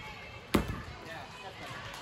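A gymnast's vault landing: one sharp thud as her feet hit the thick landing mat about half a second in, over faint background voices.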